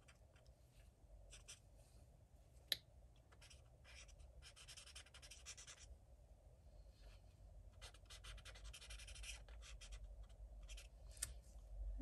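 Faint scratching of coloring strokes on a coloring-book page, coming in runs of a second or two. A single sharp tap sounds about three seconds in.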